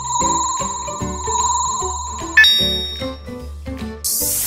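Background music with a steady beat under a continuous electronic ringing sound effect, which stops a little over halfway through with a single bright ding that rings out.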